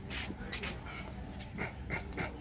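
Toy dog on a store shelf giving short, high dog-like sounds as it is handled, a couple of them near the end.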